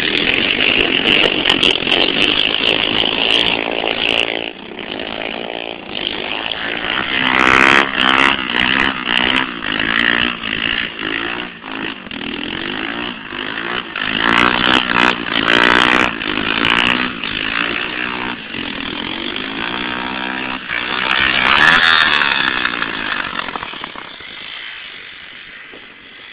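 Small mini-ATV quad engines revving, their pitch rising and falling in repeated sweeps as the throttle is worked. The engine sound fades near the end as the quad moves away.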